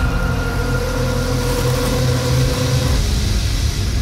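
Lamborghini Huracan LP580-2's V10 engine running steadily, a low, even engine sound.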